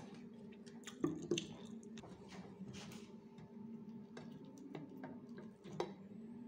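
Faint scattered clicks and taps of a mug and a spoon being handled, over a low steady hum.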